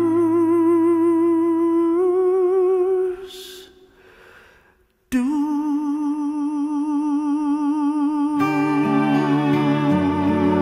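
A woman's voice holding long notes with a steady vibrato, wordless. The first note steps up about two seconds in and dies away, then after a brief near-silent gap a second long held note begins. Low instrumental accompaniment comes in under it near the end.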